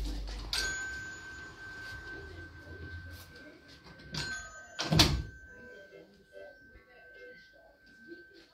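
A telephone ringing with one steady high electronic tone that starts about half a second in and holds on. A single loud knock comes about five seconds in.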